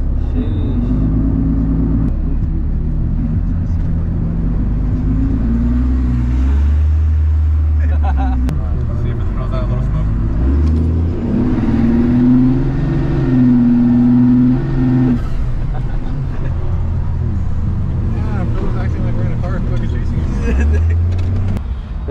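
Pickup truck driving on wet roads, its engine and road noise heard from inside the cab. Over it are a voice and held low tones that change pitch in steps.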